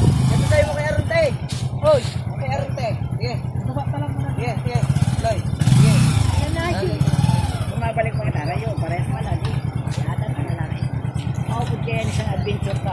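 Bajaj motorcycle engine running under load as the bike is ridden and pushed up a loose sand slope, revved harder about six seconds in. People's voices talk over it.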